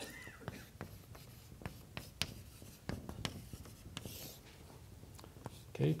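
Chalk writing on a blackboard: a run of sharp, irregular taps and short scratches as letters are written and underlined.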